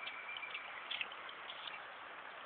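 Shallow river running, a steady rush of water, with a few faint ticks and small splashes about a second in.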